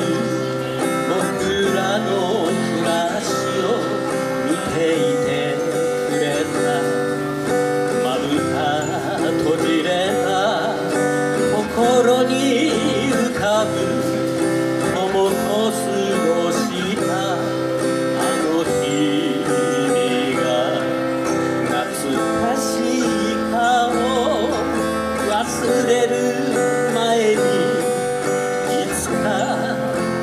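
Steel-string acoustic guitar playing chords steadily through an instrumental passage of a song, with no clear singing.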